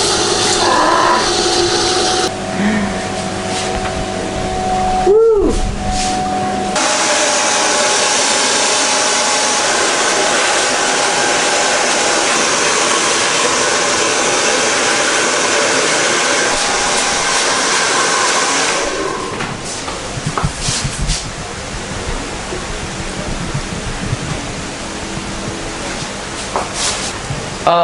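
Handheld hair dryer blowing on hair, with a steady whine; it starts suddenly about seven seconds in and cuts off about nineteen seconds in.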